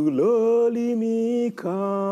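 A man chanting a Swahili poem in a sung recitation style, drawing out two long held notes with a short break between them.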